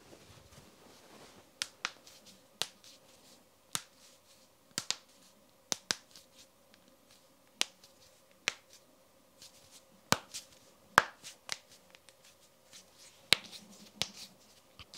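Knuckles and finger joints cracking as a man presses and bends his hands against each other. More than a dozen sharp pops come at uneven intervals, starting about a second and a half in; the loudest is about eleven seconds in.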